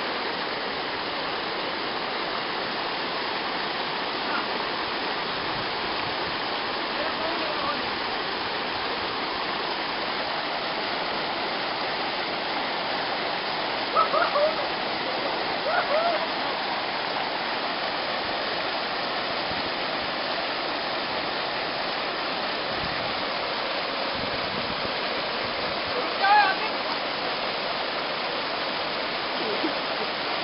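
Small waterfall pouring over rock into a pool, a steady rush of falling water throughout. A few short voice calls break through about halfway in and again later on.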